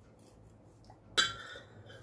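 A steel knife blade strikes a porcelain plate once, a sharp clink about a second in that rings briefly and fades, as the knife comes down through the cake onto the plate.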